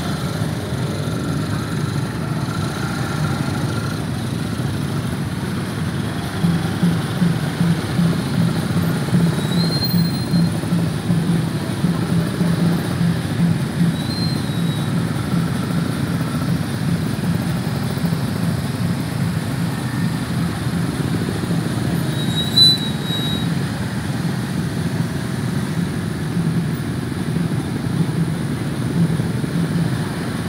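Motorcycle engines idling in a dense crowd make a steady low rumble. From about a fifth of the way in, a low pulsing beat runs through it, and a single sharp knock sounds about three-quarters of the way through.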